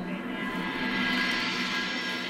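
Background music: a sustained chord of many held notes that swells up to a peak about a second in, then eases off, like a scene-transition sting.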